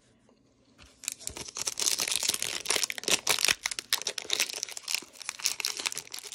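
Plastic wrapper of a trading-card pack crinkling and tearing as it is pulled open by hand: a dense run of crackles that starts about a second in.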